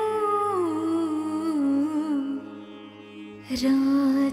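Female vocal from a slow Marathi film song, holding long notes and gliding smoothly between them over a steady low drone. The line sinks and fades about two and a half seconds in, then comes back sharply near the end.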